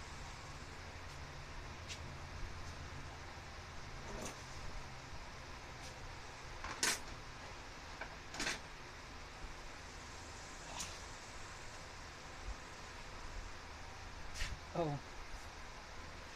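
A few scattered knocks and clinks of gear being handled and moved about, the loudest about seven and eight and a half seconds in, over a low steady hum.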